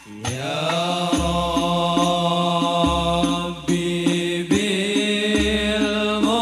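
Male voices chanting an Islamic devotional qoshidah (sholawat) in the Banjari style, sliding up into a long held note just after the start and then holding sustained, slightly wavering notes, with a new phrase beginning about 4.5 s in.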